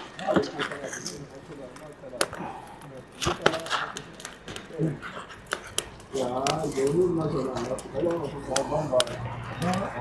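Scattered clicks and knocks as scrap wood and ash are handled at the burnt-out fire under a steel drum, with quiet talking from about six seconds in.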